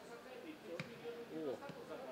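Football players' voices calling out on the pitch, with a single sharp thump of a football being kicked a little under a second in.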